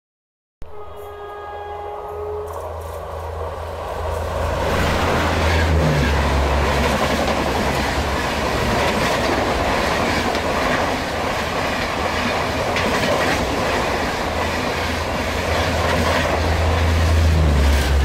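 WAP-4 electric locomotive sounds its horn briefly, a steady chord lasting about two seconds. Then the Tejas Express grows louder as it approaches, and its coaches run past close by with a steady rumble of wheels on the rails.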